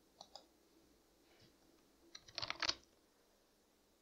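Faint clicking at a computer: a pair of quick mouse clicks near the start, then a short run of several sharp clicks a little over two seconds in.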